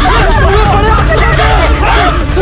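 Several people screaming and crying out at once in panic, their wordless cries overlapping, over a steady low rumble.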